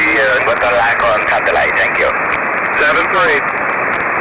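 Single-sideband voice heard through an amateur radio receiver on the FO-29 satellite downlink: a thin, narrow-band voice that the recogniser could not make out, over steady receiver hiss. The voice stops about three and a half seconds in, leaving only hiss.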